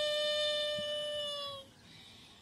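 A young woman singing a Telugu film song unaccompanied, holding one long, steady note that fades out about one and a half seconds in, followed by a brief pause.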